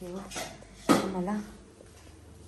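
Brief wordless voice sounds and a clink of dishes about a second in.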